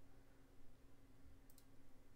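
Near silence with a low steady hum, broken by a faint computer mouse click about one and a half seconds in.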